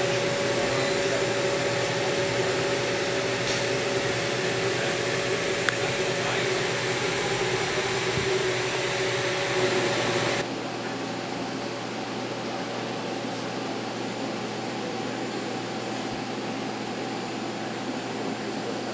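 Steady hum of machine-shop machinery, CNC machining centres running, with several steady tones in it. About ten seconds in it drops suddenly to a quieter, duller hum.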